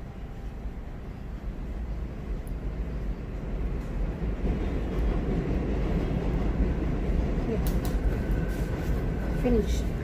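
Low rumble of a passing elevated subway train that builds steadily louder, with a few faint scissor snips about eight seconds in and a voice starting near the end.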